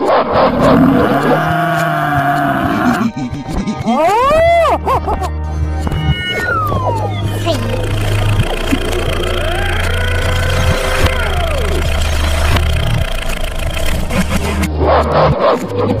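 Background music with a steady bass line, overlaid by cartoon sound effects, including a cluster of quick rise-and-fall pitch sweeps about four seconds in and more gliding tones after.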